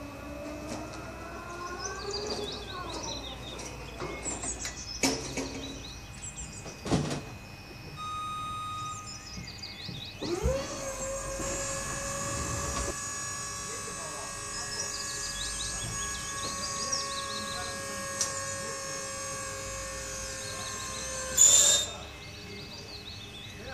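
Battery-electric hydraulic pump motor of a JLG 2630ES scissor lift spinning up about halfway through and running at a steady whine as the platform rises, stopping near the end with a short loud noise. Birds chirp before the pump starts.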